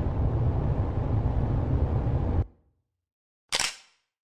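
Steady low road and engine rumble of a car driving, heard from inside, that cuts off abruptly about two and a half seconds in. After a second of silence comes a single short, sharp click-like burst that dies away quickly.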